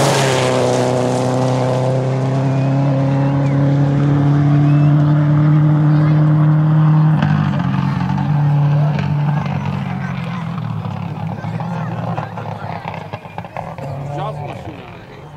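Subaru Impreza rally car at full throttle, passing close and then pulling away over gravel. The engine note climbs steadily and drops at a gear change about seven seconds in, then fades as the car draws away.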